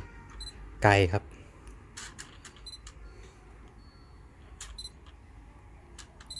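Autofocus drive of a Sony LA-EA4 adapter's built-in motor turning a Zeiss Sonnar 135mm f/1.8 A-mount lens as focus racks between near and far subjects, heard as several brief clicks. There are also two short high beeps, about three and five seconds in.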